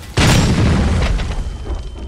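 An explosion: a sudden loud boom just after the start that dies away over about a second and a half. Near the end a steady high-pitched ringing tone sets in, the ear-ringing effect after a blast.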